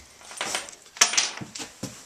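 A few sharp knocks and scrapes of wooden boards being handled against a wooden trough frame, the loudest knock about halfway through.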